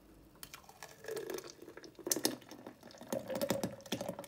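Blended melon purée pouring and splashing into the metal bowl of an ice cream maker, with drips and a scatter of light clicks.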